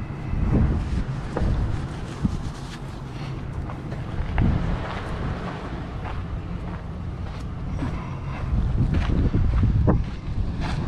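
Wind buffeting the microphone in a low, gusty rumble, strongest briefly near the start and again over the last second or two, with a few scattered knocks.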